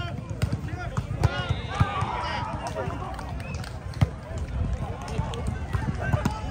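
Volleyball rally: a few sharp slaps of hands hitting the ball, the loudest about a second in and about four seconds in, over overlapping shouts and chatter from players and onlookers.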